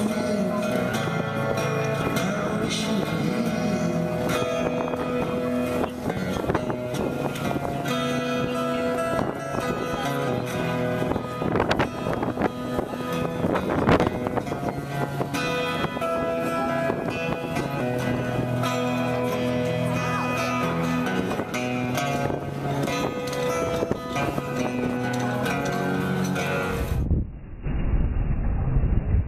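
Acoustic guitar played steadily through a small busking amplifier. About a second before the end the music cuts off and is replaced by a duller, muffled recording.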